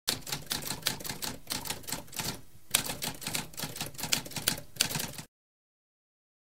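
Typewriter typing: a fast run of key strikes with a brief pause about two and a half seconds in, stopping abruptly about five seconds in.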